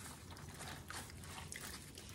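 Plastic-gloved hands handling a wet, salted napa cabbage quarter: faint, irregular crinkling, crackling and squelching of the gloves and leaves.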